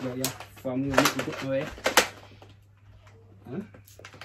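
A person's voice making short vocal sounds for the first two seconds, with a few sharp clicks among them, then a quiet stretch and a brief vocal sound near the end.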